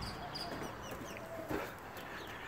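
Faint bird calls, short chirps and clucks, with a single soft knock about one and a half seconds in.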